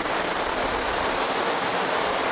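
Steady, even background hiss with no distinct events, the tail of the voice fading out just at the start.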